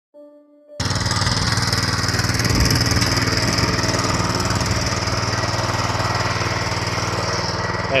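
5.5 hp mini tiller's small petrol engine running steadily under load, its tines churning through soil. The sound cuts in abruptly under a second in.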